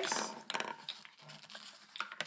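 Light clicks and taps of a ball staircase toy's moving steps and balls, a quick cluster of clicks about half a second in, then fainter scattered ticks.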